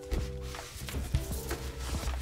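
Soft background music with held tones, over a few light knocks and rustles from a fabric pouch and its strap being handled and slung on.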